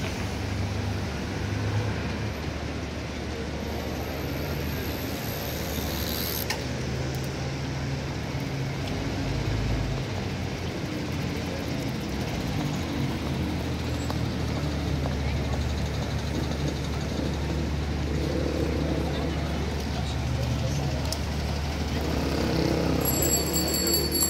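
City street traffic: cars and a delivery van passing and idling at a crossroads, a steady low engine hum under a constant road-noise haze, with indistinct voices of passers-by.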